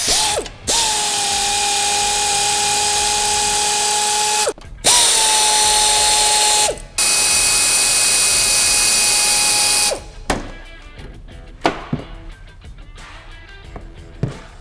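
Right-angle power ratchet with a 17 mm socket undoing the nut of a sway bar link. It runs three times, with a steady whine that starts a little higher and settles. After about ten seconds it gives way to light clicks of metal parts being handled.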